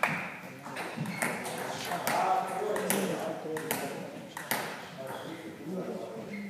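Table tennis balls ticking sharply at irregular intervals, with people talking between the ticks.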